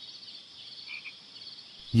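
A steady, high-pitched chorus of calling small animals, with a brief trill about a second in.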